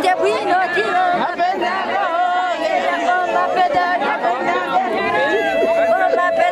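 A group of women singing and calling out together, many voices overlapping, with long held notes and wavering pitches.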